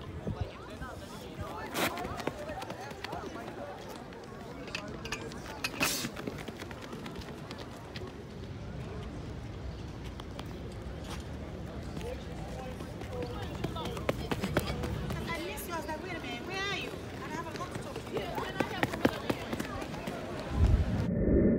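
Scattered voices of people talking and calling out in the open, not close to the microphone, with a sharp knock about two seconds in, another about six seconds in, and a run of quicker clicks late on.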